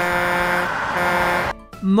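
Truck horn honking twice, two steady blasts of one unwavering pitch back to back, stopping about a second and a half in.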